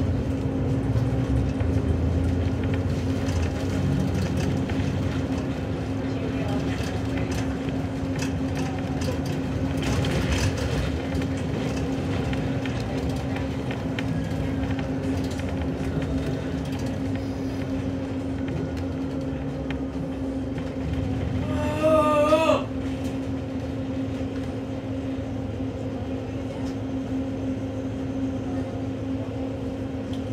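Inside a city bus on the move: a steady drivetrain hum over road rumble. About two-thirds of the way through there is a brief wavering squeal, typical of the brakes as the bus comes to a stop.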